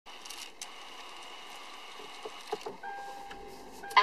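Steady hum inside a car cabin with a few soft clicks, then a steady electronic tone from a little under three seconds in as the built-in navigation unit starts up.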